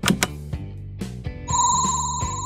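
Animation sound effects over background music: a sharp click as a toy lever is pulled, then about one and a half seconds in a loud, steady high ringing tone with a fast flutter starts, the slot-machine-style sound of picture reels starting to spin.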